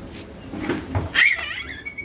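A small child's high-pitched squeal, bending in pitch and lasting under a second, a little after halfway through.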